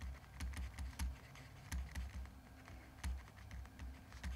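Stylus writing by hand on a tablet screen: faint, irregular light taps and clicks with dull knocks, about three a second.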